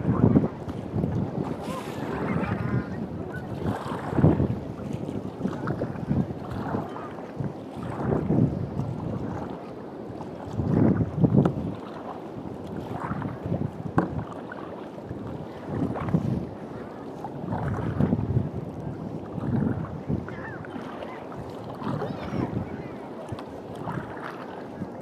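Kayak paddle strokes splashing in sea water and water slapping against the plastic hull, surging about every couple of seconds, with wind buffeting the microphone.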